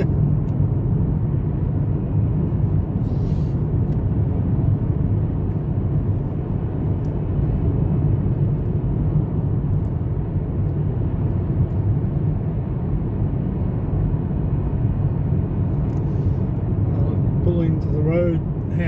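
Steady low rumble of a car's engine and tyres heard from inside the cabin while cruising at highway speed.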